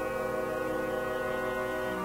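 Orchestra in a 1975 radio opera recording holding one steady sustained chord.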